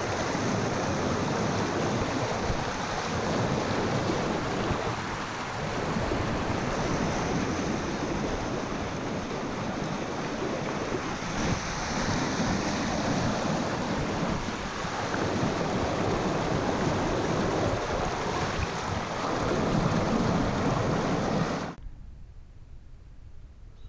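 River rapids rushing over ledge rock close by: a steady, loud whitewater noise that cuts off suddenly near the end.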